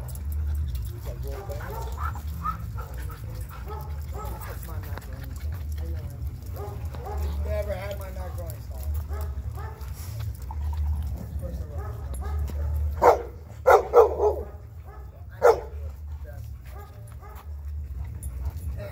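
Dogs at play, with a quick run of loud, sharp barks about thirteen seconds in and one more bark a couple of seconds later, over a steady low hum.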